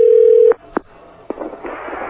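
A steady telephone line tone heard over a studio phone line cuts off about half a second in. A few clicks on the line follow as the call fails to connect.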